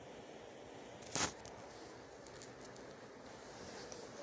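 A clear plastic French curve ruler being shifted on fabric: one brief rustle about a second in, over a low steady hiss.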